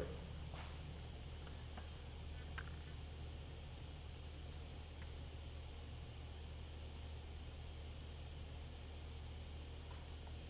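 Quiet room tone: a low, steady hum with a few faint ticks.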